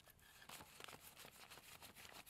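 Faint, quick flicking of paper banknotes being counted by hand, several flicks a second.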